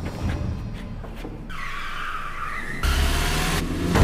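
Film sound of car tyres screeching for about a second, then a louder rush of car engine and road noise as the car speeds off, over background music.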